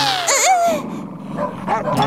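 Cartoon sound effects: a quick whoosh at the start, then a dog whimpering and yelping in short wavering cries that fade to a quieter stretch.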